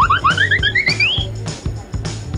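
Background music with a steady beat, with a quick run of short notes climbing in pitch over the first second or so.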